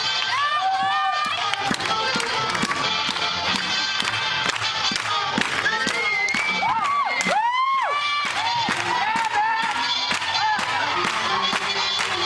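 Up-tempo swing music with a steady beat, with a crowd cheering and whooping over it, loudest around the middle.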